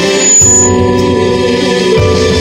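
Live band music with held, organ-like keyboard chords sounding steadily.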